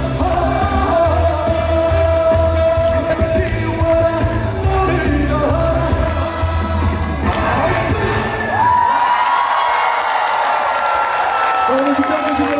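A male singer singing a trot song live into a microphone over loud backing music with a heavy bass beat. About three-quarters of the way through the bass drops out, leaving a long held high note to the end.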